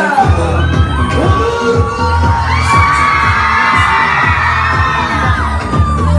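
Pop music with a heavy, steady beat, over a crowd of young fans screaming and cheering; the screaming swells in the middle seconds.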